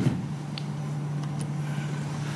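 A steady low hum in a lecture hall, heard through the microphone pickup, with two or three faint ticks in the middle.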